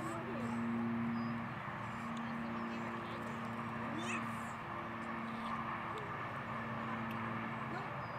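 Distant, indistinct chatter of a small group of people, with a steady low hum underneath and a few short high squeals.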